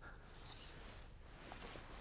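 Faint, steady outdoor background hiss with no distinct sound event.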